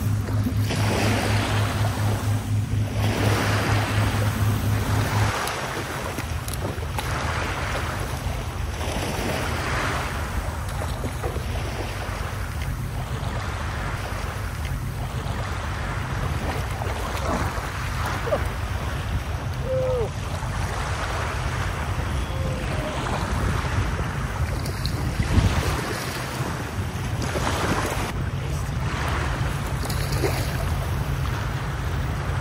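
Small waves washing in shallow sea water around a wading angler, with wind buffeting the microphone; the rush swells and fades every couple of seconds. A low steady hum runs underneath, louder for the first five seconds or so.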